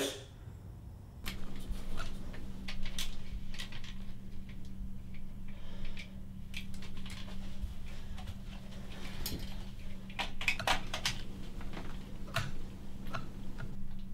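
Scattered light clicks, taps and rattles of a camera being handled and adjusted on a tripod, over a steady low hum.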